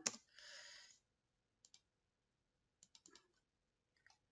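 Faint clicks of a computer mouse, a single click and then a quick pair, while an Excel formula is filled down a column; a short soft hiss comes in the first second.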